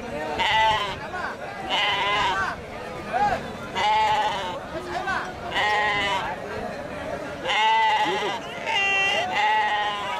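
Penned sheep and goats bleating: a string of about seven calls, roughly one a second, some long and quavering, over a background of market crowd noise.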